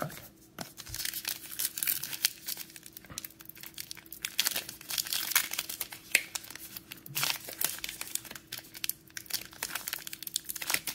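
A silver foil trading card pack wrapper being torn open and crinkled by hand. It makes a dense, irregular crackle of small tears and crinkles that starts about a second in.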